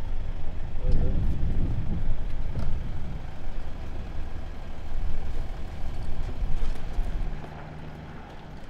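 Low rumble of vehicle engines idling at the kerb, uneven in level, falling away about seven seconds in. A brief voice is heard about a second in.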